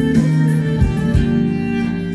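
Live Turkish Black Sea folk band playing an instrumental passage between sung lines: keyboard and string instruments holding steady notes, with a couple of low drum beats about a second in.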